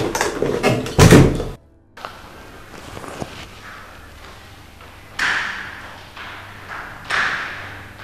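A loud thud about a second in, then, after a short silence, a few heavy thuds about two seconds apart, each ringing on briefly in a hard-walled room.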